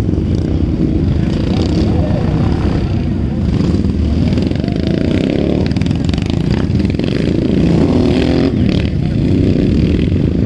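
Several racing motorcycle engines running and revving continuously as the bikes race around a dirt track, loud throughout, with voices over the engine noise.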